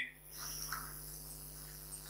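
Faint room tone: a steady low hum with hiss.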